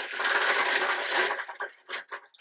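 A hand stirring through a pile of small hard clear balls in a fabric-lined basket: a continuous clattering rattle that thins into a few separate clicks near the end.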